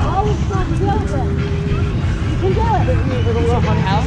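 Indistinct voices of several people talking, over a steady low rumble.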